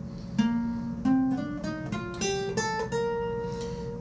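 Acoustic guitar playing one octave of the B-flat major scale upward, single plucked notes climbing step by step, then the top B-flat held and left ringing.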